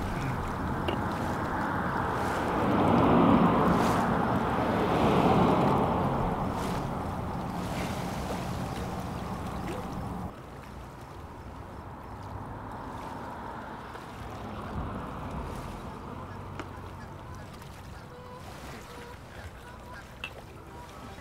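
Shoreline ambience: a steady rush of wind and water at the bay's edge. It swells for a few seconds near the start, then drops suddenly to a quieter level about ten seconds in.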